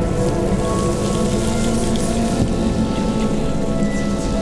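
Ambient sound-design music bed: steady low drones and several held tones under a dense crackling, rain-like hiss.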